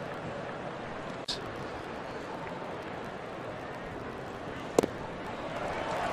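Steady ballpark crowd murmur, with one sharp pop about five seconds in as a pitch smacks into the catcher's mitt on a swinging strike three.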